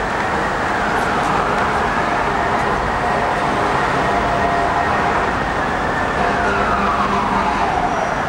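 Emergency vehicle siren wailing, slowly rising and falling in pitch over steady street traffic noise. It holds high through the middle and falls away near the end.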